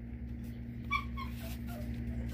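A dog whimpering: two short high-pitched whines about a second in, over a steady low hum.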